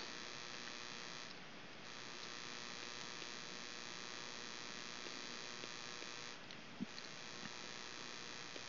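Steady faint electrical hum and hiss with a thin high whine, the background noise of the recording setup, dipping briefly twice, with one small click near the end.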